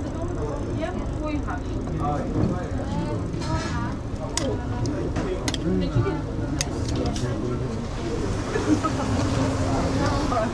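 Metal serving tongs clicking several times, mostly in the middle stretch, while fresh tagliatelle is lifted into a ceramic bowl. Under them run steady background chatter and a low hum.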